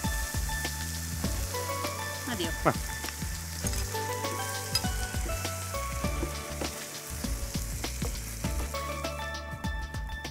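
Diced vegetables and tomato purée sizzling in a frying pan as a wooden spatula stirs them, under soft instrumental background music. The sizzling fades near the end.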